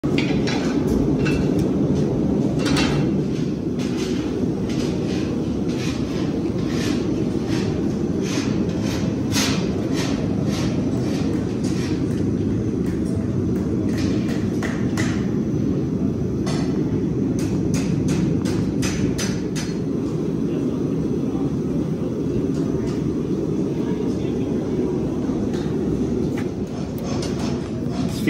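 Busy barn ambience: a steady low rumble with background voices and scattered, irregular sharp knocks and taps.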